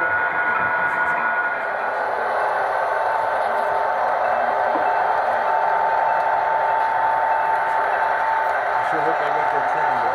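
Steady engine drone from a sound-equipped HO-scale KCS diesel locomotive's small onboard speaker, with a steady whine-like tone over it, as the model locomotives run; indistinct voices sit faintly behind it.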